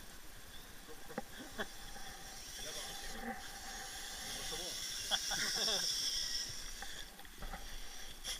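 Electric motor and gear train of a radio-controlled rock crawler whining as it drives, loudest a little past halfway.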